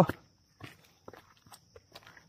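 Footsteps on a stony dirt trail: a few faint, irregular steps.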